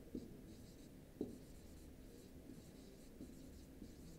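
Dry-erase marker writing on a whiteboard: faint squeaky, scratchy strokes as the words are written.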